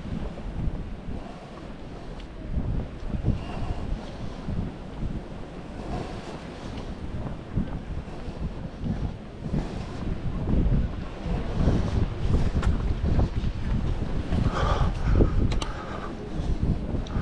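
Wind buffeting the microphone in uneven gusts, a low rumbling noise that rises and falls throughout.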